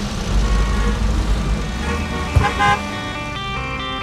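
Deep rumble of cars in traffic under background music, with a short car horn toot about two and a half seconds in.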